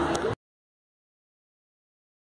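Faint room tone with a low hum that cuts off abruptly about a third of a second in, followed by total digital silence.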